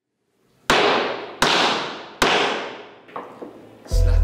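Wooden chairman's gavel striking its wooden sound block three times, the loud knocks about three-quarters of a second apart, each ringing out in a long echoing tail, then a fainter knock near the end.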